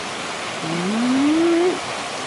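Water from under a micro-hydro turbine rushing steadily out of an outflow pipe into a creek. In the middle, a man's voice gives one brief rising hum.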